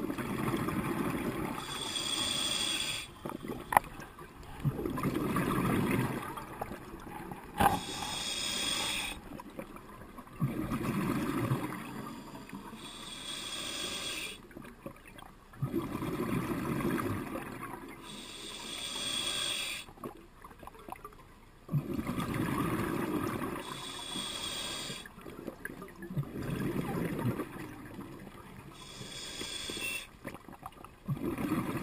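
Scuba regulator breathing, heard underwater: a hissing inhale through the demand valve, then a low bubbling rush of exhaled air, about six breaths, each about five to six seconds apart.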